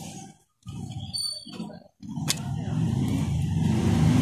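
Low steady rumble of a running motor vehicle engine, with one sharp click a little past halfway. The sound cuts out briefly twice in the first half.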